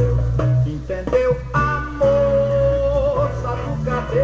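Samba song playing from a vinyl record on a turntable, in a stretch between sung lines, with one long held note that wavers slightly near the middle.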